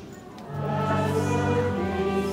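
A choir singing slow, sustained chords of sacred music. A phrase ends with a brief dip right at the start, and a new held chord begins about half a second in.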